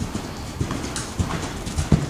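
Hoofbeats of a ridden horse moving on soft dirt arena footing: a running series of dull thuds, the loudest near the end.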